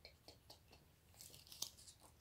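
Very faint rustling of a cloth shirt being handled, with a few soft clicks; the rustle grows a little louder in the second half as the shirt is lifted and held up.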